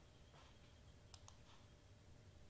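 Near silence, with two quick, faint computer mouse clicks just over a second in.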